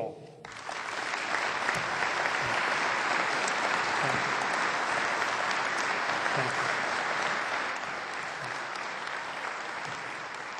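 A large assembly of parliamentarians applauding in a big chamber. The clapping starts about half a second in, builds within a second to a steady level, and eases slightly near the end.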